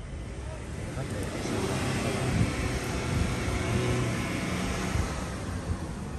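A motor vehicle passing by: its engine and road noise swell from about a second in, peak in the middle and fade toward the end.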